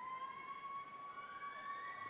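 A single steady high tone held for about two seconds, rising slightly in pitch, with a fainter second tone gliding upward in the second half; it cuts off sharply.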